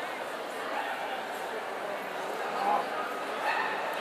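Steady background crowd chatter with a dog barking twice, short yips about two and a half and three and a half seconds in.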